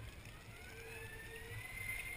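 Faint hiss of a person sliding down a wet plastic tarp water slide, with a thin whine that slowly rises in pitch.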